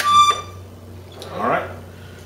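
Hohner diatonic button accordion sounding one short high D, the last note of the first row's G-major run, played with the bellows pushing in. About a second and a half in comes a brief breathy rush of noise.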